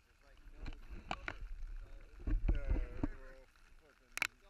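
A few sharp knocks and low rumbling bumps on a kayak as the camera mounted on it is moved, with the heaviest bump about two and a half seconds in.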